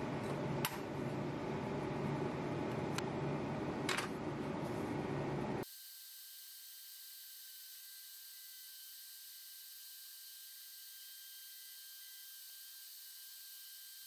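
Steady fan noise with a few light clicks as thin laser-cut plywood parts are handled on the laser cutter's metal honeycomb bed. About six seconds in it drops abruptly to a faint steady high hiss.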